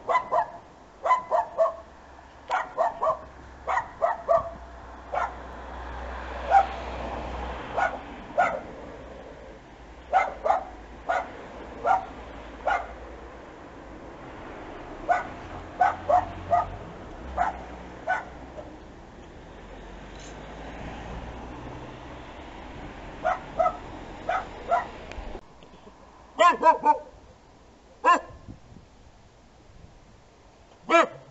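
A dog barking repeatedly at a passer-by from behind a gate, in runs of two to five barks with short pauses, over a low background rumble. About 25 seconds in, the rumble cuts off and a different small dog barks a quick series, then once more.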